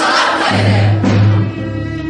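Mixed youth choir singing with orchestral accompaniment. The massed voices give way about half a second in to a deep, sustained low note from the accompaniment.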